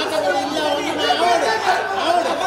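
Several men talking loudly at once over one another in a heated argument, voices overlapping into chatter.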